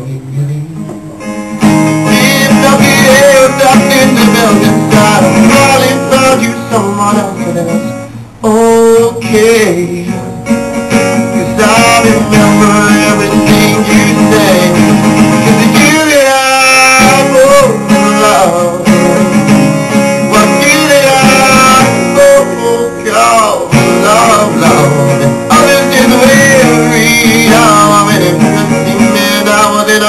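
Acoustic guitar played live by a solo performer. It starts quietly, is full and loud from about two seconds in, and drops briefly about eight seconds in.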